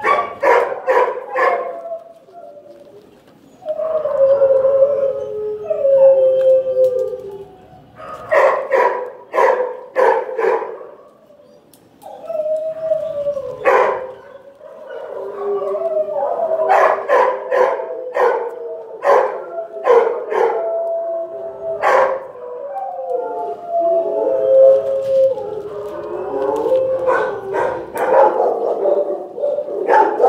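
Several shelter dogs barking and howling in the kennels: clusters of sharp barks alternating with long, wavering howls, often overlapping at different pitches, with brief lulls.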